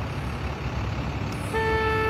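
Road traffic passing close by, a steady low rumble. About one and a half seconds in, a vehicle horn sounds one long steady note.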